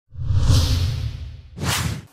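Whoosh sound effect for a news video transition. A long swoosh over a low rumble fades out, then a second, shorter swish comes about one and a half seconds in.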